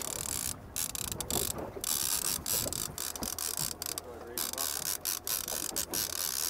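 Fishing reel ratcheting and clicking as a hooked lake trout is reeled up to the boat.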